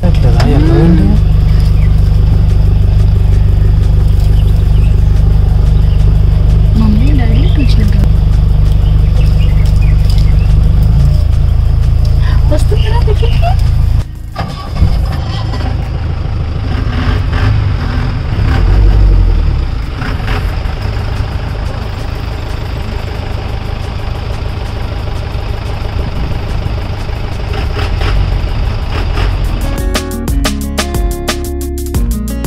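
Safari vehicle engine running with a steady low rumble, with people's voices over it. The sound breaks off for a moment about halfway through, then goes on less evenly.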